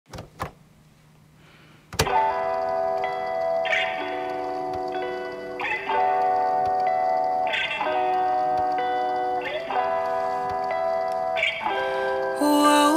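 Slow R&B instrumental intro: sustained chords that change about every two seconds, starting about two seconds in after a couple of short clicks.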